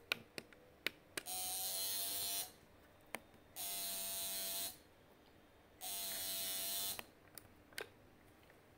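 ApneBoot neonatal foot probe's vibration motor buzzing in three pulses of a little over a second each, with gaps of about a second between them, with faint handling clicks in the gaps. This is the vibration stimulation the device gives a newborn's foot to restart breathing when an apnea is detected.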